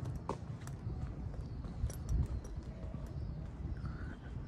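Footsteps on stone paving, with scattered sharp clicks over a low rumble.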